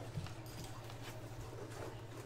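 Hard plastic card case being handled, giving a few faint knocks and clicks over a steady low electrical hum.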